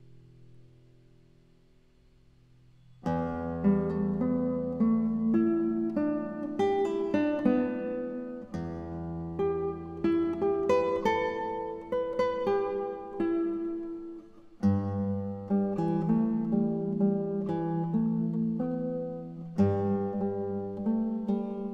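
Background music: after a faint held tone, an acoustic guitar piece of plucked notes and chords begins about three seconds in.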